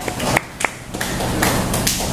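Scattered hand claps from a small audience at the end of a song: a few single claps about a quarter second apart, then denser clapping from about a second in.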